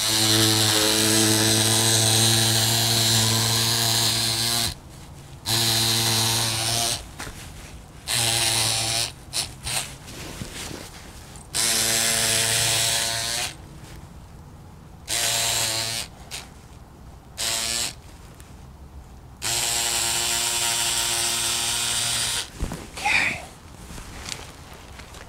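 Small handheld electric cutter running in repeated on-off runs of one to four seconds, a steady motor hum, as it cuts two-ounce chopped strand fiberglass mat along the edge.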